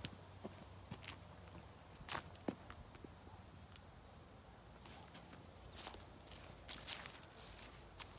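Faint footsteps scuffing on a tarmac driveway: scattered steps and scrapes, with a busier run of them about five to seven seconds in.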